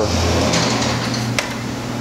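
Plastic rubbing and scraping as a hand works the loose headlight housing in its mount, with a single sharp click about a second and a half in.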